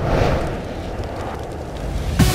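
Cinematic title sound effects: a low rumble dying away after a boom, then a whooshing swell that rises near the end.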